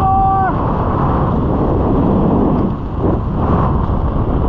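Steady wind rushing over the microphone during a descent under an open parachute canopy. A voice trails off in the first half second.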